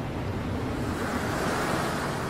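Whoosh sound effect of an animated logo intro: a swell of rushing noise that grows louder and brighter toward the end.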